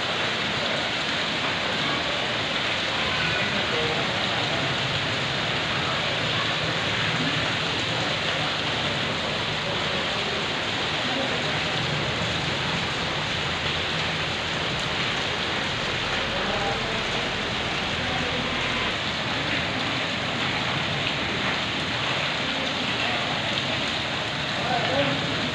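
Heavy rain pouring steadily onto a flooded concrete yard, a constant even hiss of falling water.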